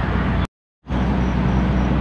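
Steady engine hum and road noise inside a moving car. The sound cuts out completely for about a third of a second, half a second in, then resumes unchanged.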